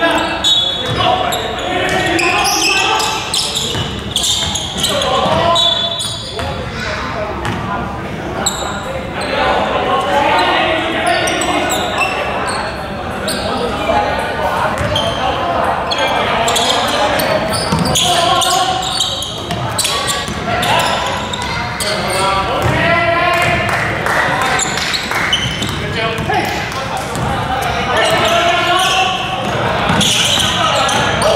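Basketball bouncing on a hardwood gym court during a game, with players' voices calling out, all echoing in a large indoor hall.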